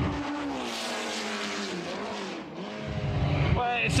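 Lotus 49's Cosworth DFV V8 racing engine running hard as the car passes, its pitch falling away over the first two seconds or so. The revs then climb again and the engine gets louder near the end.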